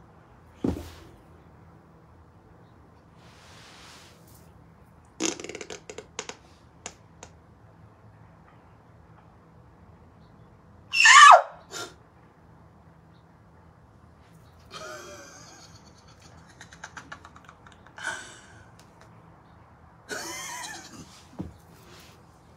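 Short fart-like body noises as she moves while kneeling on a carpeted floor, with a thump just under a second in. About eleven seconds in comes a loud high squeal that falls in pitch.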